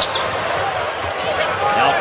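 Basketball arena during live play: steady crowd noise, with a ball bouncing on the hardwood court a couple of times near the start.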